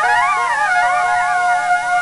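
Experimental music for cornet and electronic programming: a steady held note under many overlapping tones that keep sliding up and down in pitch.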